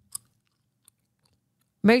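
A short wet mouth click close to the microphone, then a fainter tick, over near silence. A woman starts speaking near the end.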